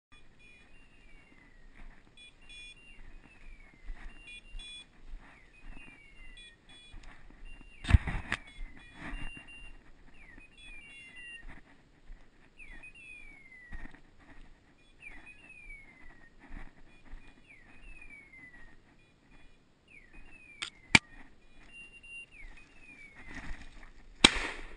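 Dog's electronic beeper collar repeating a short falling tone about once a second, with brief steady beeps between, over the rustle of footsteps through woodland undergrowth. Two sharp cracks stand out, the louder about eight seconds in and another about twenty-one seconds in.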